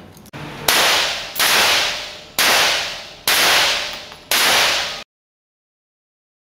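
Five sharp cracks, about one a second, each starting suddenly and trailing off over most of a second; the sound then cuts off suddenly.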